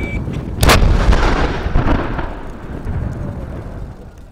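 Controlled detonation of explosive ordnance during mine clearance: one sharp blast about half a second in, followed by a long rumbling echo that slowly fades.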